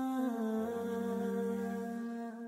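Wordless layered vocal humming in long held notes that step down in pitch about half a second in, used as background outro audio with no instruments.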